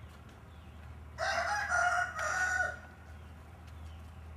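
A rooster crowing once, starting about a second in and lasting about a second and a half, in three linked parts.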